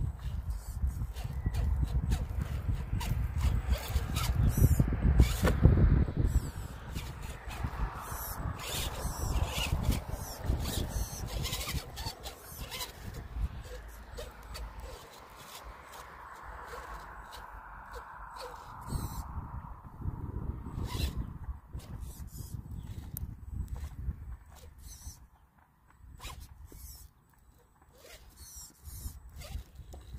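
Electric motor and gears of an RC scale crawler whining softly as it creeps down a slope, with frequent crackles and snaps of wood chips and sticks under the tyres. A low rumble is loudest in the first six seconds.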